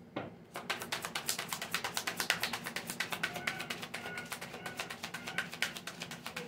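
A deck of cards being shuffled by hand: a quick, uneven run of crisp card snaps and clicks, starting about half a second in.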